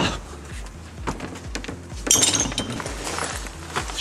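Background music with a steady beat, over crunching and clinking of debris being climbed over, loudest in a burst about two seconds in.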